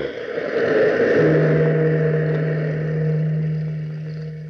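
A large bell struck once about a second in, its deep hum ringing on and slowly fading, over the rushing roar of surf.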